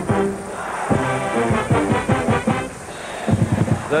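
College pep band brass (trumpets, trombones and sousaphones) playing held notes, with drum hits.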